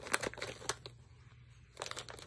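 Scissors cutting into a vacuum-sealed plastic bag: a few sharp snips and plastic crinkling in the first second, quieter after, then another short crinkle of the plastic near the end.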